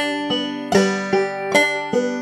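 Five-string banjo played clawhammer style: a slow, even drop-thumb exercise of single open-string notes, each pluck ringing into the next.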